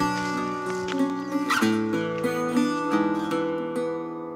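Instrumental opening of a folk song played on a plucked acoustic string instrument: held chords that change every second or so, fading near the end before the singing begins.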